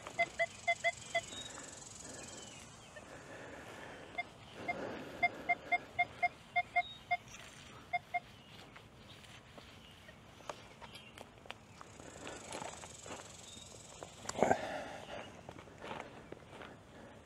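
Nokta Triple Score metal detector sounding short, mid-pitched target beeps as the coil sweeps back and forth over a buried target. A few beeps come right at the start, then a run of about four a second from about four to eight seconds in: a signal the detectorist reads as a zinc penny. Near the end comes a brief, louder rustle.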